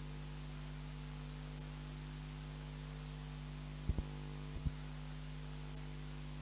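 Steady electrical mains hum, with a few short low thumps a little after the midpoint.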